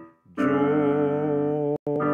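Electric keyboard chords: one chord fades away, then a new chord is struck about half a second in and held, with a brief dropout in the sound just before the end.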